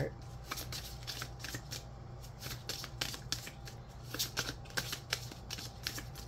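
A deck of tarot cards being shuffled by hand: a run of quick, irregular clicks of card against card.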